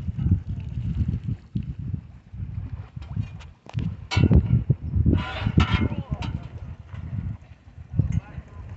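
Wind buffeting a phone microphone in uneven low gusts, with people's voices calling out about four seconds in and again between five and six seconds.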